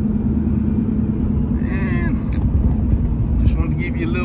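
Steady low road and engine rumble of a moving vehicle, heard from inside the cab while driving.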